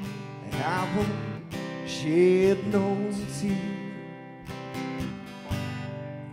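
Live band playing an instrumental passage: a lead guitar line with bending notes over strummed guitar and drums.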